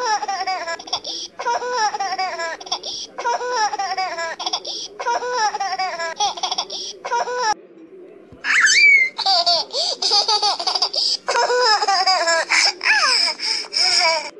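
High-pitched laughter in repeated bouts of about a second each, broken by short pauses, with a longer run in the second half.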